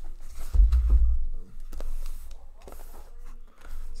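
Cardboard case of boxed trading cards being handled and turned over on a table, with a deep low bump about half a second in, the loudest sound, followed by scraping and rustling of the cardboard.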